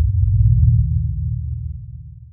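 Deep, low rumble from an intro sound effect, swelling up and then fading away, with one faint tick partway through.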